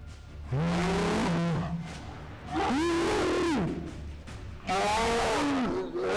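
Men yelling with effort in three long, loud shouts about a second apart, each rising and then falling in pitch.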